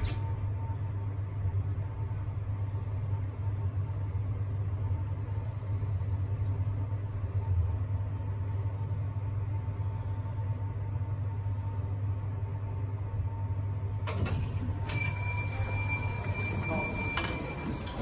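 OTIS traction passenger lift travelling down two floors: a steady low hum with a faint steady whine while the car moves. About fourteen seconds in it stops and the doors open, and a chime rings out for about two seconds.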